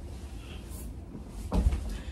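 A single thump about one and a half seconds in, over a steady low room hum.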